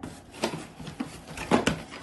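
Hand rummaging in a cardboard shipping box: items rustle and knock against each other, with a few sharp clicks, the loudest about half a second in and around one and a half seconds.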